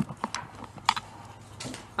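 A few sharp, irregular clicks and knocks of a phone being handled and repositioned against a workbench.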